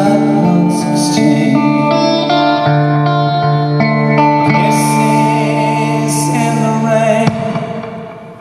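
Live music: a semi-hollow-body electric guitar playing ringing, held chords under a male singing voice, with a lot of hall echo. About seven seconds in the playing stops suddenly and the sound dies away.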